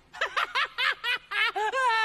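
An animated character's male voice laughing in quick, high-pitched bursts, about five a second.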